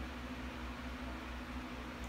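Electric pedestal fan running: a steady, even hiss with a low hum underneath.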